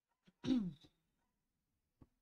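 A woman's short wordless vocal sound, like a throat-clear or 'hmm', falling in pitch and lasting about half a second, just before the middle of the pause.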